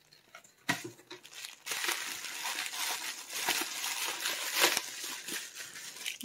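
Blue plastic bubble wrap crinkling and rustling as it is unwrapped by hand, with irregular crackles; it starts just under a second in.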